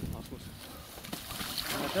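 Water sloshing and running through a breach in an earthen pond dam, a low noisy wash with no clear strokes.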